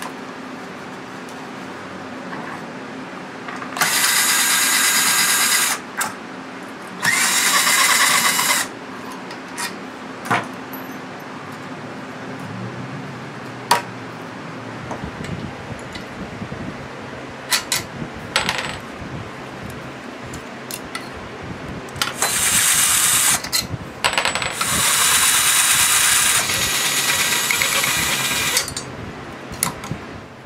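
Power drill-driver running in four bursts of about one and a half to four seconds while a lawn mower engine is taken apart. Between the bursts, metal parts click and knock.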